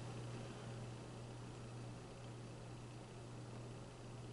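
Quiet room tone: a steady faint hiss with a low, even hum and no distinct sounds.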